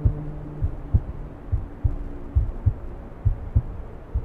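Soundtrack heartbeat: low double thuds, lub-dub, a little under one beat a second, over a low steady hum.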